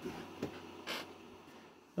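Faint movement noises as someone turns in a chair: a light click about half a second in and a brief rustle about a second in.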